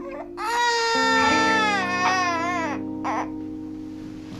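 Newborn baby crying: one long high wail starting about half a second in and falling away, then a short cry about three seconds in, over sustained background music chords.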